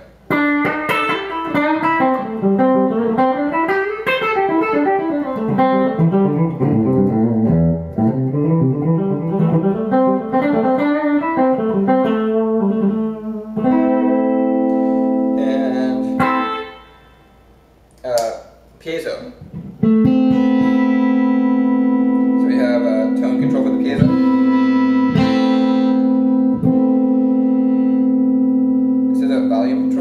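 Ibanez Prestige RG2120X electric guitar played with a clean tone. It starts with fast scale runs that climb and fall for about 13 seconds. After a short break, long sustained notes ring out for the last third.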